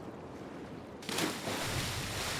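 Water rushing along a boat's hull: a faint hiss at first, then a louder, steady rushing noise starting about a second in.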